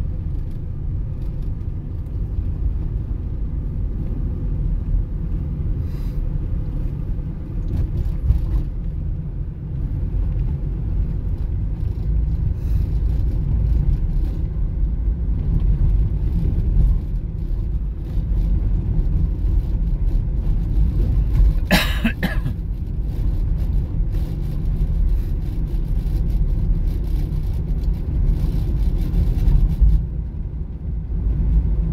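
Steady low rumble of road and engine noise inside a car's cabin as it rolls slowly in traffic, with a brief sharp burst of noise about two-thirds of the way through.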